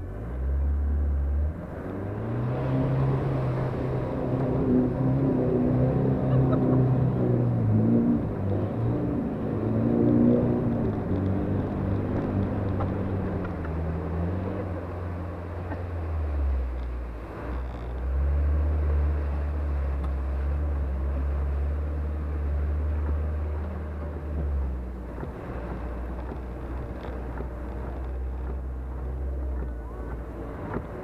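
Off-road 4x4's engine pulling hard as it drives through a muddy water crossing. It revs up about two seconds in and holds high, wavering, then drops, holds a steady pull for several seconds and eases to a lower note near the end.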